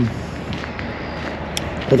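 Steady outdoor background noise with a few faint footsteps on a dirt path.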